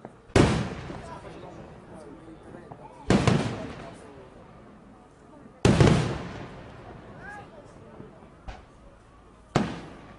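Aerial firework shells bursting: four loud booms spaced two to four seconds apart, each echoing away, with a smaller bang shortly before the last.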